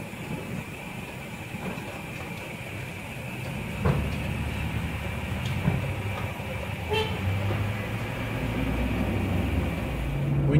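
Steady road and engine noise inside a moving vehicle's cab at highway speed, a low rumble with a faint high whine, and a short knock about four seconds in.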